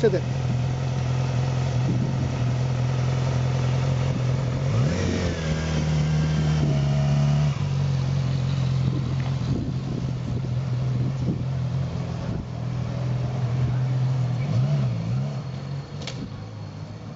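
Yamaha YZF-R6's inline-four engine running as the bike pulls away and rides off, a steady low engine note that rises in pitch for a couple of seconds around five seconds in, then settles back.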